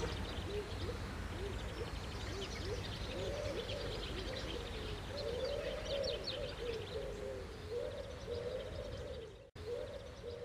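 Birds calling: a run of short, low, arching calls repeated in quick succession, with faint higher chirps above them over a steady hiss. The sound cuts out for a moment near the end.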